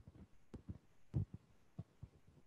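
Quiet pause on a video call with a handful of faint, short low thumps scattered through it.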